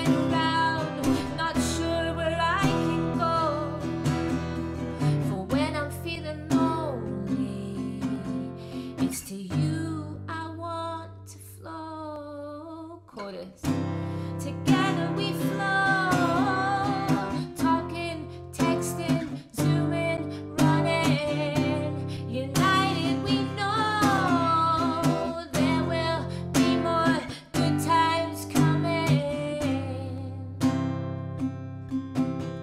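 A woman singing a draft verse-and-chorus melody over strummed acoustic guitar chords. About halfway through, the strumming drops away under a held, wavering sung note, then picks up again.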